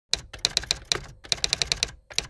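Typewriter sound effect: a quick run of sharp key clacks, about a dozen, with a brief pause a little after a second in before the clacking resumes.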